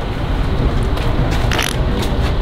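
Plastic portable toilet door being pulled open, with a short scrape about one and a half seconds in, over a steady low outdoor rumble.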